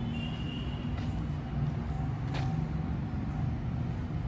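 Steady low background rumble with no speech. There is a faint thin high tone in the first second and two faint clicks, about one and two and a half seconds in.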